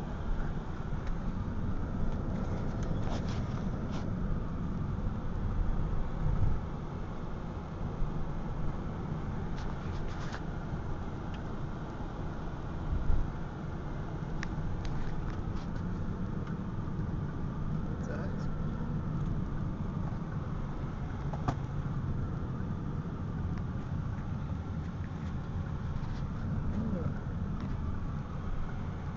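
Steady low road and engine noise inside a Ford Freestyle's cabin while it drives along at speed, with scattered light clicks and a louder low thump about halfway through.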